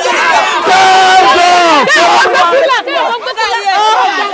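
A crowd of men and women shouting and calling out over one another, loud and excited, while one voice urges them to be patient.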